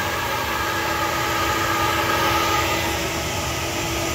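Air-flow bench running steadily, its motors drawing air through the number one runner of an Edelbrock intake manifold at a constant test pressure while it flows about 202 CFM: an even rush of air over a steady hum.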